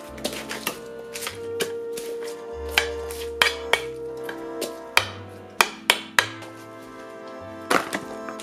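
Background music with a moving bass line. Over it, a knife taps sharply and irregularly on a glass cutting board while lettuce is chopped, about eight taps.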